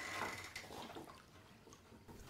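Water swishing faintly in a plastic basin as it is stirred with a wooden stick, mixing in powdered moringa seed to clear it; the sound fades away after about a second.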